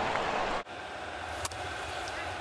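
Ballpark crowd ambience from a baseball broadcast, cut off abruptly about a third of the way in, then a quieter ballpark ambience with a sharp crack of the bat on the ball near the middle.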